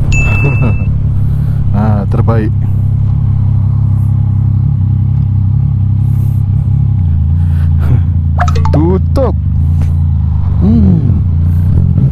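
Yamaha Tracer 900 GT's three-cylinder engine, fitted with an Akrapovic exhaust, running at low speed as the bike turns around. Its note is steady, then drops lower about seven seconds in.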